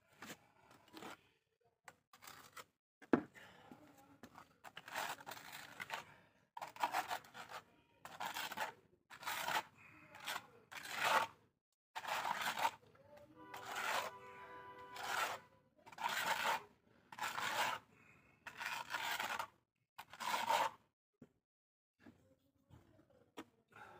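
A steel plastering trowel scraping and spreading wet cement render across a brick wall, one rasping stroke about every second.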